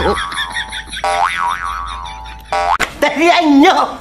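A comic, cartoon-style sound effect with a pitch that wobbles up and down, played twice in the same form. Near the end a person laughs.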